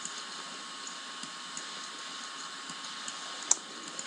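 Steady hiss of a desk microphone's background noise, with a few faint ticks and one sharper click about three and a half seconds in.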